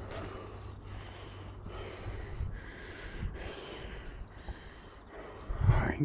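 A walker breathing heavily and rhythmically while climbing a steep footpath, out of breath, with a louder exhale near the end.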